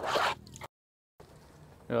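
A brief rustling noise, then a sudden drop to dead silence for about half a second at an edit, followed by faint outdoor background until a voice starts near the end.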